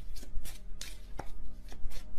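A tarot deck being shuffled by hand to draw a clarifier card: an uneven run of crisp card snaps and taps, several a second.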